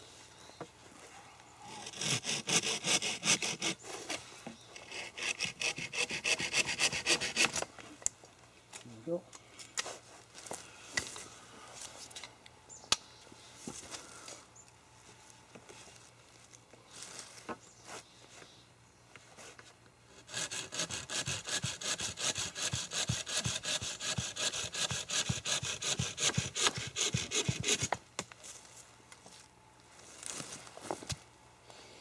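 A coarse-toothed folding saw cutting through a hard wooden staff pole to shorten it, in quick back-and-forth strokes. It comes in two bouts, one starting a couple of seconds in and a longer one starting about twenty seconds in, with sparse lighter strokes between.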